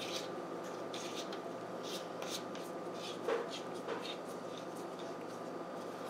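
Faint scratching and light clicks from hands handling a AA battery and multimeter test probes, a little louder twice past the middle, over a steady faint hum.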